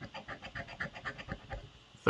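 A coin being rubbed back and forth over the latex coating of a lottery scratch-off ticket, in quick, even rasping strokes, about six a second, stopping just before the end as the number is uncovered.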